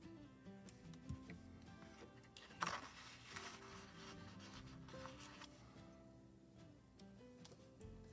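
Quiet background music of soft held notes. About two and a half seconds in there is a brief rustle with a few clicks as a paper sticker is peeled from its sheet with tweezers.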